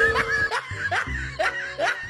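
A person laughing in about five short, rising bursts, with music underneath.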